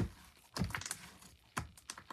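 Hands squeezing and stretching soft slime, which gives off sharp pops and clicks as air pockets burst. There is a crackle right at the start, a small cluster about half a second in, and a few more near the end.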